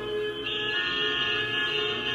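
Film soundtrack played through small speakers: many car horns held at once, making a dense chord of steady tones. A higher horn joins about half a second in.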